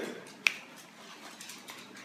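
A single sharp finger snap about half a second in, made to call a dog over.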